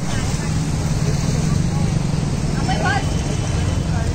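Steady roadside traffic noise with indistinct voices, and a brief voice heard about three seconds in.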